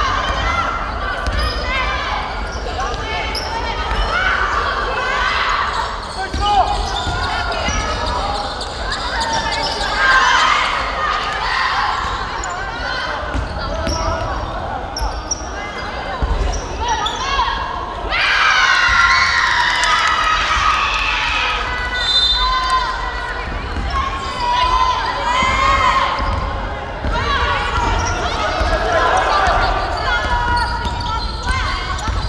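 Basketball bouncing on a hardwood gym floor during play, with players' voices shouting and calling out across the court throughout.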